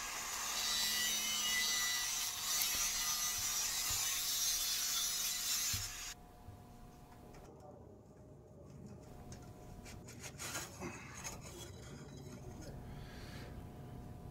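Angle grinder grinding on the steel cementation canister to open it, a steady hissing grind that stops abruptly about six seconds in. Quieter scattered metal handling noises follow as the canister is worked open at the vise.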